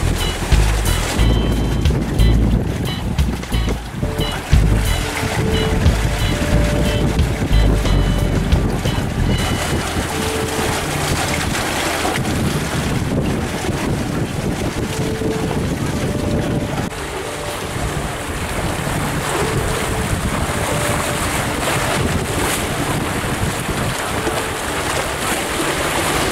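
Wind buffeting the microphone and water rushing along the hull of a Noelex 25 trailer yacht under sail in a fresh breeze. The wind rumble comes in heavy gusts for the first ten seconds or so, then settles into a steadier rush of wind and water.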